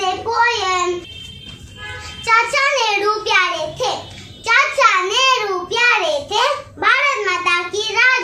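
A young girl singing a Hindi children's poem in a sing-song, rising-and-falling voice, with a short pause about a second in.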